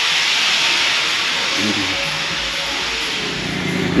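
A steady, even hiss, with faint low tones underneath in the second half.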